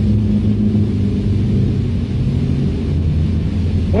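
Steady low hum and rumble with a faint hiss over it, unchanging throughout.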